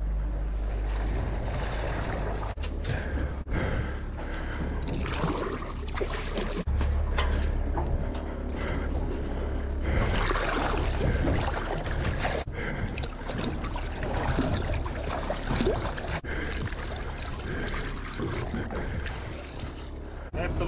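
Seawater splashing and sloshing as whole albacore tuna are dunked and swished alongside a boat to rinse off the blood after bleeding.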